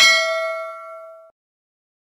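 Animation sound effect: a sharp hit that rings like a struck bell or chime, fading over about a second and then cutting off abruptly.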